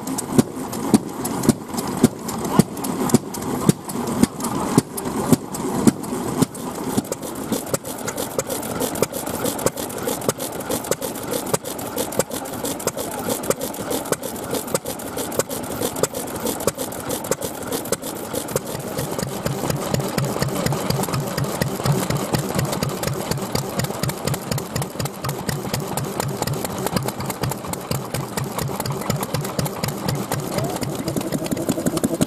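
Vintage single-cylinder stationary kerosene engines with large flywheels running, a slow, regular firing beat about twice a second, later giving way to a faster, steady chugging rhythm.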